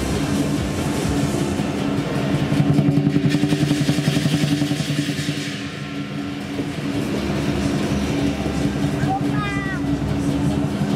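Lion dance percussion of drum, cymbals and gong playing for a pole-top lion dance. A rapid, loud drum roll swells a few seconds in, then eases off.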